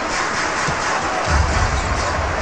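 Basketball arena crowd noise with music playing over the public-address system; a low bass sound comes in a little after halfway.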